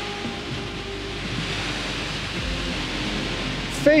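Wind rushing over the microphone with small waves washing on the shore, under quiet background music of held tones. A man's voice begins a word at the very end.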